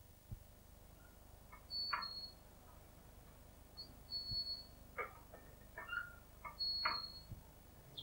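Faint bird chirps: three short high notes a couple of seconds apart, with softer chirps between them.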